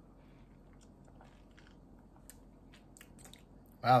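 Faint mouth sounds of a man drinking and tasting a smoothie: sipping and swallowing, with a few small clicks and lip smacks in the second half.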